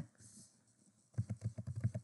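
Computer keyboard typing: a quick run of keystrokes starting a little over a second in, after a quiet first second.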